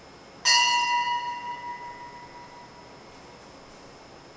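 Altar bell struck once about half a second in, a bright ring that fades away over about two seconds; it marks the elevation of the consecrated host at Mass.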